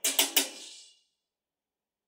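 Three sharp clicks in the first second as the rotary current-selector tap switch of a resistance butt-welding machine is turned from one detent position to the next.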